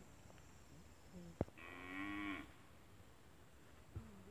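A cow mooing once: a short, steady call of under a second, just after a sharp click about a second and a half in.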